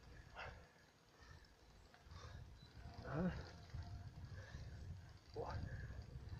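Faint low rumble of wind and tyres from bicycles riding up a climb, with three short, faint voice or breath sounds spread through it.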